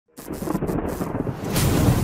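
Thunder-like rumbling sound effect with crackling, swelling louder with a rising hiss near the end, as a logo intro.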